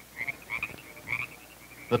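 Frogs croaking: a series of short calls, about two a second.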